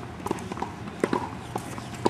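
Tennis ball bouncing on a hard court and a player's quick sneaker steps as he sets up for a forehand: a few sharp knocks, the loudest about a second in.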